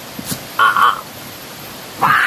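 A single short, harsh animal call about half a second in.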